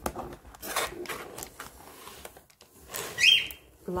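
Light rustling and rubbing of a chipboard sheet being handled in a cardboard box, then about three seconds in a short, loud rising chirp from a bird.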